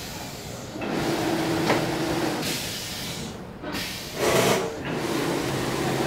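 Plastic packaging-film production machinery running: a steady low hum with hiss, swelling louder for a moment about four and a half seconds in.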